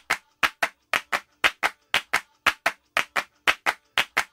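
Hand claps beating a steady rhythm on their own, about four claps a second in uneven pairs, with no other instruments: the clapped opening of a Bollywood song.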